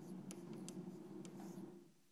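Chalk writing on a blackboard: a run of quick taps and scratches as symbols are written, stopping shortly before the end.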